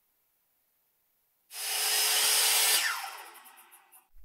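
Circular saw switched on about one and a half seconds in, running loudly for just over a second, then switched off and winding down with a falling pitch.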